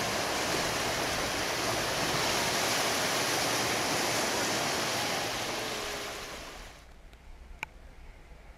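Shallow seawater washing and splashing around a GoPro held at the surface, a steady rushing noise that fades and drops away about seven seconds in. Under it comes a quiet underwater background with a couple of sharp clicks near the end.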